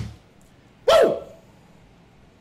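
Music cuts off at the start, then a single short, loud vocal cry about a second in, rising and falling in pitch.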